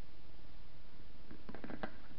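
A few light plastic-on-metal clicks and knocks about one and a half seconds in, as a fuel can's green spout is worked into the Honda CBR600RR's fuel filler neck, over a steady background hiss.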